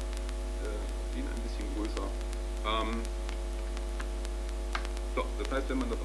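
Steady electrical mains hum with a buzzing overtone running throughout, the loudest sound. A brief faint voice shows about halfway through, and a few light clicks come near the end.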